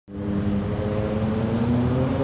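Street traffic at an intersection: passing cars with a steady engine note that rises slightly in pitch near the end.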